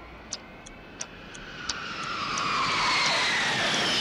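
A clock ticking, about three ticks a second, under a jet aircraft's engine whine. The whine swells steadily louder and its pitch falls as the plane passes.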